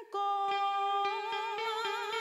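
Cải lương stage music: a woman's voice singing long, wavering held notes over instrumental accompaniment, with a few light plucked-string notes. It starts just after a brief break at the very start.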